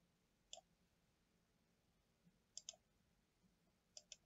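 Computer mouse clicks against near silence: a single click about half a second in, a quick double click a little past halfway, and another click at the end.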